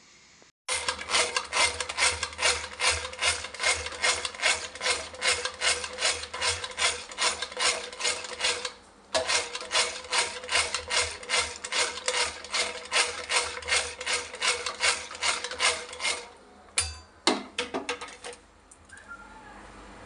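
Small hand-held electric beater whisking curd in a steel bowl: a steady motor hum with a rhythmic rasping pulse of about three strokes a second. It stops briefly about nine seconds in, runs again until near the end and finishes with a few short bursts.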